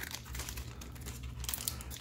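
Foil wrapper of a Pokémon card booster pack crinkling in the hands as it is handled and opened, a run of light, irregular crackles.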